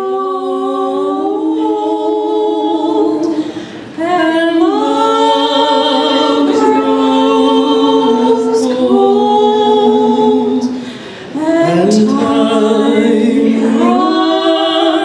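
A woman singing unaccompanied through a microphone, holding long sustained notes, with short breaks about four and eleven seconds in.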